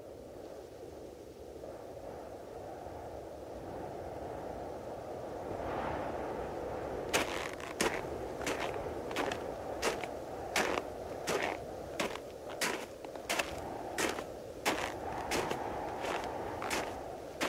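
Sound effects opening a hip-hop album intro: a low rushing noise swells over several seconds. Then, from about seven seconds in, sharp cracks come at a steady pace of about three every two seconds.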